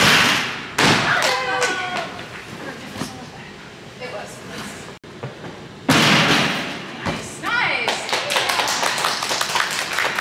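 Gymnastics vaulting: a loud bang of feet striking the springboard, followed by thuds of hands on the vault table and the landing on the mat, twice, about six seconds apart. Short cheers between the vaults and clapping near the end.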